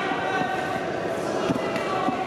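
Indistinct voices shouting in a large, echoing sports hall, over dull thuds of an MMA bout: gloved strikes and feet on the ring canvas. One sharper thud comes about one and a half seconds in.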